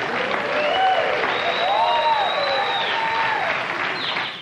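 Studio audience applauding a punchline, with voices rising and falling over the clapping.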